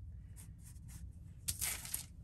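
Paper planner pages and a sticker sheet being handled: a few faint soft paper sounds, then one short, louder rustle about one and a half seconds in, over a low steady hum.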